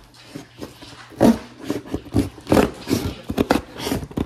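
A kitchen knife sawing through a cardboard box: rough rasping strokes, about two or three a second, starting about a second in.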